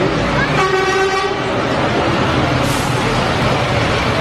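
A vehicle horn sounds once, a short steady blast just over half a second in, over continuous street noise with engines running.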